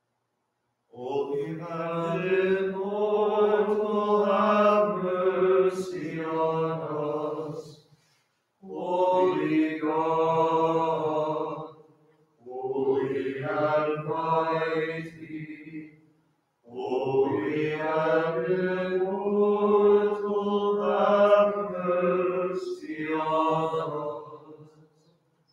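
Voices singing Byzantine-rite liturgical chant in four long phrases, with short pauses between them.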